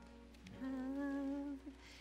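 A woman humming one steady, quiet note for about a second.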